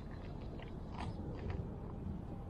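Small, irregular clicks and scrapes as gloved hands work a hook and lure out of a largemouth bass's mouth, the sharpest click about a second in, over a low steady background rumble.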